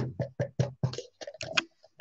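A plastic bottle of white acrylic paint being handled and shaken, a quick run of clicks and knocks at about four or five a second.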